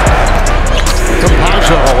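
A basketball dribbled on a hardwood court amid live game sound, under background music with a steady beat; a commentator exclaims "Oh" near the end.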